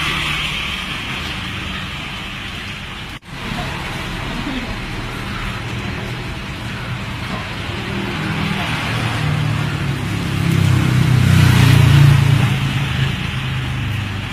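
Street traffic: steady road noise with a motor vehicle's engine rumble that grows to its loudest about three-quarters of the way through, then eases. The sound cuts out for an instant about three seconds in.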